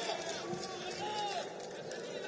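Faint shouts and calls of footballers across the pitch, a few drawn-out voices over steady open-air stadium ambience.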